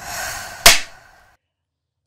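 Clapperboard snap sound effect: one sharp clap a little under a second in, preceded by a short hiss.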